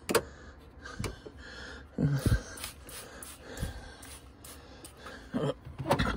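Handling sounds inside a fridge: a sharp click at the start, then a few short clicks and brief hisses as a trigger spray bottle of cleaner is worked.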